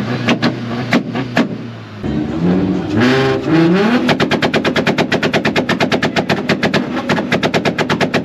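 Tuned Mk4 Volkswagen Jetta engines: a few irregular exhaust pops, then a rev climbing in pitch for about two seconds, then from about four seconds in a fast, even train of exhaust bangs, about eight a second, the sound of a two-step launch limiter held on the rev limit.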